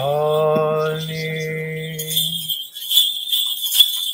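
A chanting voice holds one long, steady note that ends about two and a half seconds in. From about two seconds, small bells jingle in repeated short shakes.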